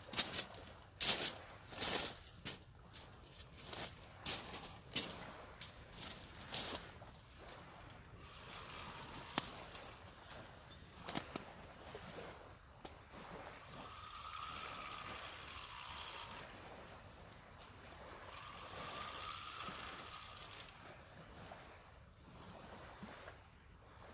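Clicks and knocks from a sea-fishing rod being lifted off its rest and handled. Then a fishing reel is wound in, its whirr coming in two spells of a few seconds each, as a line loaded with weed is retrieved.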